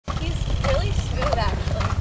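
A horse trotting on arena sand, with a few soft hoofbeats, under faint voices and a steady low rumble.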